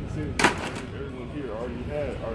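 A single sharp knock about half a second in, followed by quiet, low speech.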